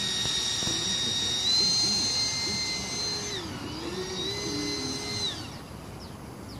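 70 mm electric ducted fan of a radio-controlled MiG-15 model whining at part throttle. It steps up about a second and a half in, dips briefly past halfway, rises again, then spools down near the end.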